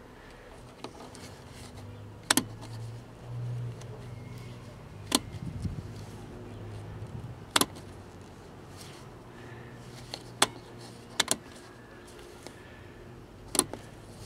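Scattered sharp clicks, about seven of them a second or more apart with two in quick succession, from the CRT tester's controls being worked while a picture tube is checked. A low steady hum runs underneath.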